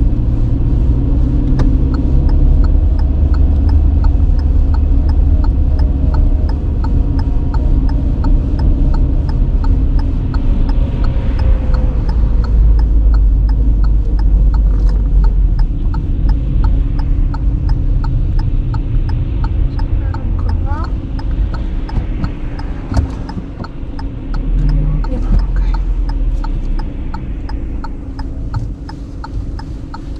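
Car interior road and engine rumble as the car drives slowly through town and then slows to a stop, the rumble dropping off near the end. A faint regular ticking runs under it.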